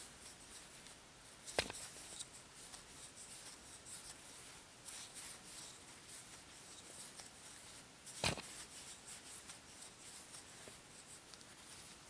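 Faint scratching and rubbing of worsted weight yarn drawn over and through a wooden-handled crochet hook as stitches are worked by hand. There are two sharp clicks, one about a second and a half in and one about eight seconds in.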